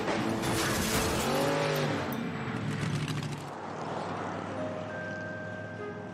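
Monster truck engine revving loudly as the truck jumps onto a row of cars, over background music. The engine noise fades out a little past halfway, leaving the music alone.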